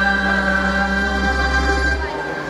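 Mixed choir of men's and women's voices singing Montenegrin folk song, holding one long chord that cuts off at the very end.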